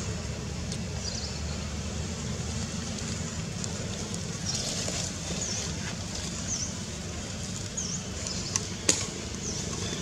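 Outdoor ambience: a steady low rumble, with short high chirps repeating about once a second from halfway on and one sharp click near the end.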